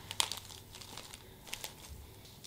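Packaging and gift-basket contents crinkling as hands arrange them in the basket: scattered crackles, the sharpest about a quarter second in and a few more around a second and a half in.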